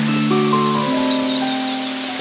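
A songbird singing a quick run of high, rising-and-falling whistled notes about halfway through, over background music with long held notes.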